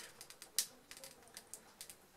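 Faint crinkles and clicks of a chocolate multipack's wrapper being turned over in the hands, with a sharper click about half a second in.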